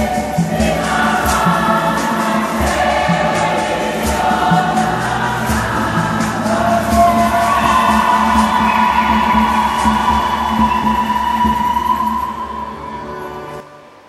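A women's choir singing a Swahili church hymn over keyboard accompaniment, a steady low beat and hand-shaken kayamba rattles. Near the end the song settles on a long held note and fades out just before the end.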